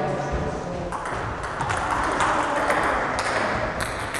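Table tennis balls clicking irregularly off bats, tables and floor as several players rally at once.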